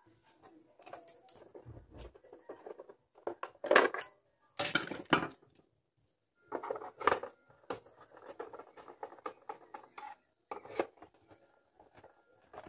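Handling noise from work on a portable radio's plastic case: irregular clicks, scrapes and rattles of hands and a small tool against the case, with louder clattering bursts about four seconds in, around seven seconds and near the end.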